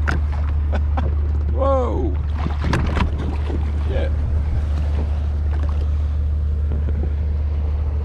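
Water slapping and splashing against a Sea-Doo personal watercraft as it rides a large ship's wake, over a steady low drone. A short voice-like sound comes about two seconds in.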